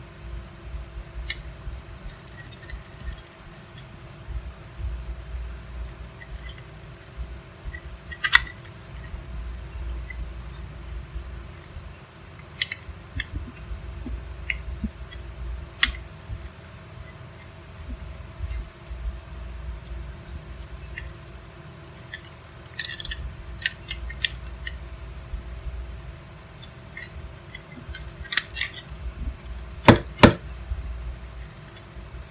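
Scattered small metallic clicks and clinks of a screwdriver working the terminal screws of a plastic generator-cord plug, with now and then a sharper click, over a steady low hum.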